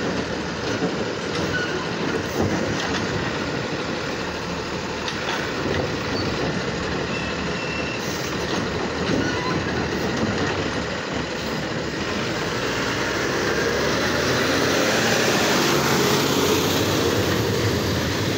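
Autocar garbage truck's diesel engine running while its McNeilus automated side-loader arm lowers and releases a cart, with a few knocks in the first couple of seconds. The truck then pulls away, getting louder over the last few seconds.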